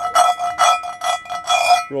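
A fingertip rubbed quickly back and forth over the rough, pebbly as-cast cooking surface of a new Lodge cast iron skillet: scratchy strokes about four to five a second, with the pan ringing steadily under them. The gritty rasp comes from the unsmoothed "orange peel" finish of a store-bought skillet.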